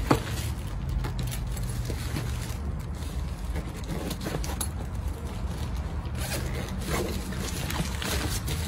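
Zipper on a heavy-duty canvas paddle-board carry bag being pulled open around the bag: a long run of fine, rapid zipper-tooth ticking and scraping.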